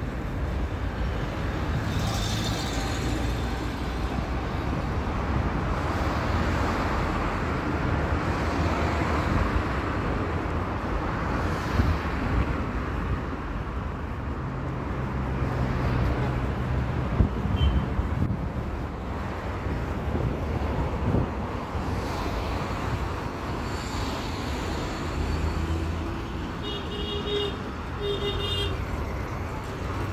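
Street traffic noise of passing cars, with a couple of short beeps near the end.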